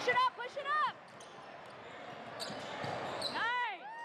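Basketball sneakers squeaking on a hardwood gym floor during a fast break, with a basketball bouncing. There are several short squeaks in the first second and another quick run of squeaks near the end.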